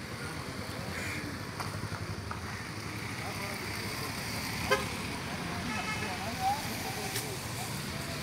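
Street ambience: a steady low traffic rumble with faint voices in the distance, a short vehicle horn toot about six seconds in, and a sharp click just before it.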